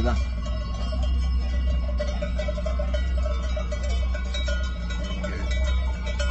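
Many cowbells worn by a herd of cows and calves clanking and jangling irregularly as the animals walk, over a steady low hum.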